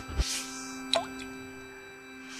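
Logo-intro sound design over soft held musical tones: a short click just after the start, a faint whoosh, and a quick gliding blip about a second in.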